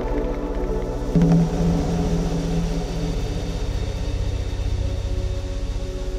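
Dark, suspenseful cinematic background music: sustained synth pads over a pulsing low end, with a deep note struck about a second in that rings on for a couple of seconds.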